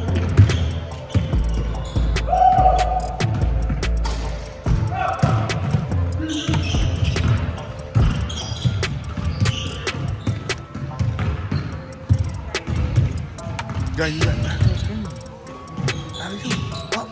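A basketball bouncing repeatedly on a hardwood gym floor during play, amid voices echoing in the hall.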